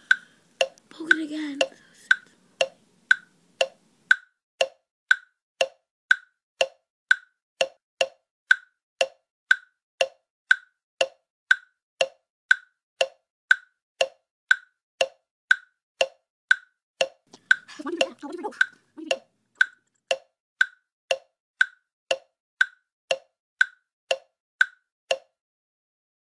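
Clock ticking steadily, about two ticks a second, each tick a crisp wooden-sounding click; it stops suddenly shortly before the end. A brief murmur of voice comes through about two-thirds of the way in.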